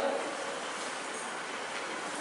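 Steady, even background hiss of room noise with no speech and no distinct events.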